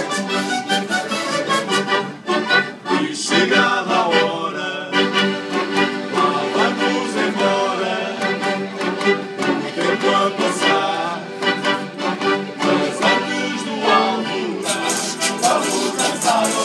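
Live instrumental passage of an Azorean bailinho tune: an accordion carries the melody over rhythmically strummed acoustic guitars. The sound gets brighter and fuller near the end.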